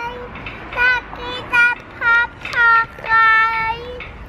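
A small child's high voice in a sing-song chant: a string of short held notes, ending with one long held note near the end.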